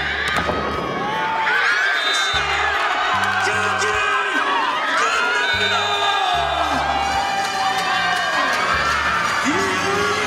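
Volleyball players shrieking, whooping and cheering together in celebration of a match-winning point, over edited-in background music with a repeating bass line that comes in a couple of seconds in.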